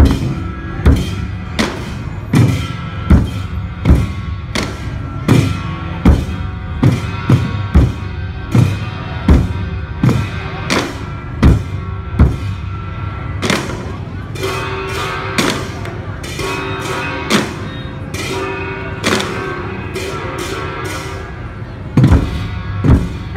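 Traditional Vietnamese barrel drums being beaten: loud, sharp strokes on a large drum, a little under two a second and unevenly spaced, with smaller drums playing along.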